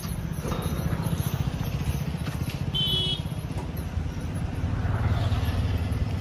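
A motor vehicle engine running close by, a steady low rumble that grows louder about five seconds in, with one brief high chirp near the middle.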